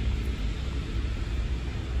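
Wind buffeting a phone's microphone on a ship's open deck: an uneven low rumble with a steady hiss above it.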